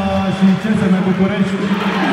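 A man's voice over a sports-hall public-address system, echoing in the hall, with crowd chatter underneath.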